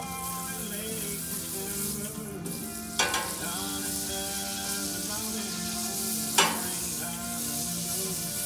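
Butter sizzling and bubbling on a hot Blackstone steel griddle as a steel spatula pushes the melting pat around, with two sharp metal clinks of the spatula on the plate, about three seconds in and again past six seconds.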